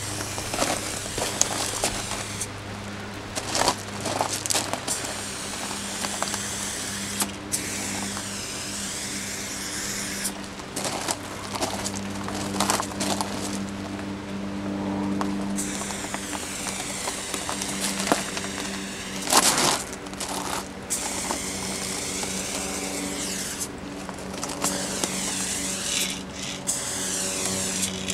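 Aerosol spray can of chrome silver paint fitted with a fat cap, hissing in long sprays with brief breaks as a tag is painted onto a steel freight car. A steady low hum runs underneath.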